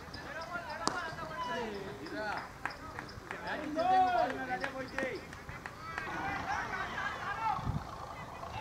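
A single sharp crack of a cricket bat striking the ball about a second in, followed by players shouting calls to each other across an open field, loudest around the middle.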